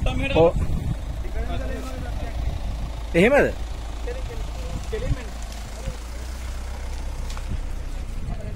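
Men's voices calling out over a steady low rumble. One loud call about three seconds in rises and then falls in pitch.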